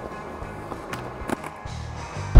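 A Walmart skateboard's wheels rolling over a hard court surface, with a few light clicks, under steady background music.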